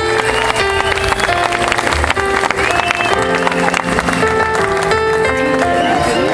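Live band music: a singer-pianist's band playing a song, with sustained keyboard notes over drums and a steady beat of short hits.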